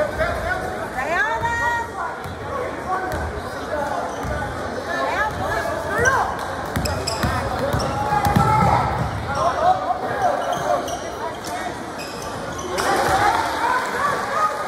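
A basketball being dribbled on a hardwood gym court, in repeated bounces, in a large gym.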